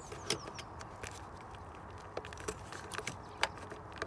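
A hand handling the plastic ABS test connector and its corrugated wiring loom: a few separate faint clicks and rustles over a low steady background.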